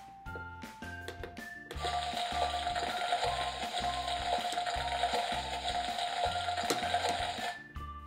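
A steady frying-sizzle sound effect, a hiss with a faint held hum, begins about two seconds in and stops shortly before the end. It plays over background music with a steady beat.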